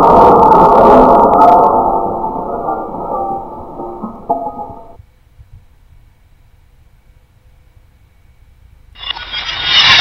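A deep, muffled crash of a martini glass shattering, the sound effect laid over slow-motion footage. It is loud at first and dies away over about five seconds into near quiet. About a second before the end comes a second, brighter burst of shattering.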